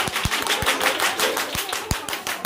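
A small group clapping: scattered, uneven hand claps, many per second, with a few dull knocks mixed in.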